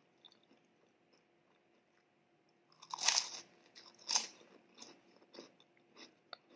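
Close-miked eating: faint wet mouth clicks of chewing, then two loud crunches of a crunchy fried snack being bitten about three and four seconds in, followed by softer crunchy chewing.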